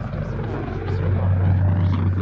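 Deep steady rumble of a jet airliner passing overhead, swelling about a second in, with faint indistinct voices underneath.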